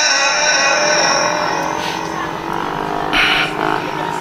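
A male Quran reciter's held, melismatic note fades out through a PA system, followed by short, loud shouts from the male audience, the usual exclamations of approval after a recited phrase.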